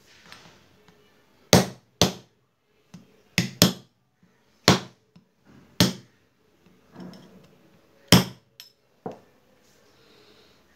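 About eight sharp metal-on-metal knocks at irregular intervals: a steel rod being struck against a bearing inside a Bajaj CT 100 magneto-side engine cover to drive the bearing out.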